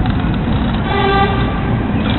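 Street traffic rumbling, with a short steady car-horn toot about a second in.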